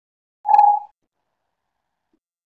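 A single short electronic beep, a steady mid-pitched tone of under half a second, about half a second in: an alert tone from the web-conferencing software.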